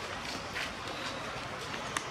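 Steady outdoor background noise with a few faint rustles and a sharp tap near the end; no monkey calls are heard.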